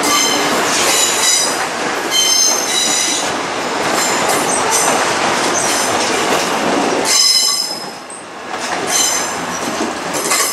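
Korail Class 351000 electric multiple unit passing slowly, a steady rumble of wheels on rail broken again and again by shrill wheel squeals. Loudness dips briefly about eight seconds in.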